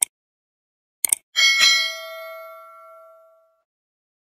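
Three short mouse-style clicks, one at the start and two together about a second in, then a bright bell ding that rings and fades over about two seconds. This is the stock sound effect of a subscribe-button and notification-bell animation.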